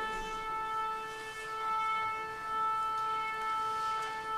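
A single steady note held throughout by an orchestra instrument, most likely the tuning A that the orchestra tunes to before the violin concerto.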